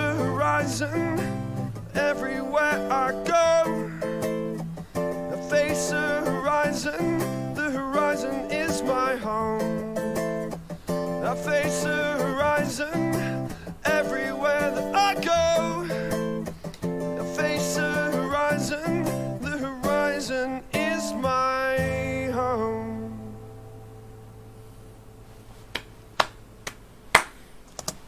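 Acoustic guitar strummed with held keyboard chords, playing the last bars of a live song. It ends on a final chord that dies away about 22 seconds in, followed by a few faint clicks.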